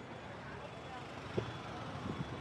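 Street ambience: a steady hum of traffic, with a brief faint voice about halfway through.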